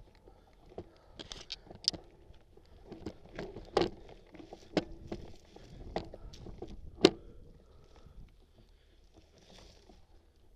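Bicycle rattling and clattering over a rough dirt trail, its knobby tyre crunching through dry leaves and twigs, with irregular sharp knocks from the bumps; the loudest knock comes about seven seconds in.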